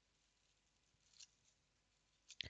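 Near silence, with one faint, brief crinkle of nail transfer foil being handled a little over a second in.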